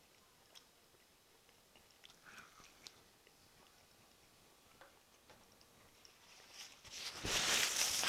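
Quiet chewing of a bite of smoked beef rib, with a few faint mouth clicks. Near the end comes a loud rustling as a paper napkin wipes the mouth right by a clip-on microphone.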